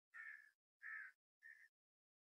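A crow cawing three times, faint: two longer caws and then a shorter one.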